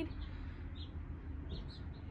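Faint, short bird chirps a few times over a steady low background rumble.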